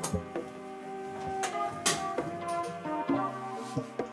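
Background music: a pitched instrumental track with a steady percussive beat.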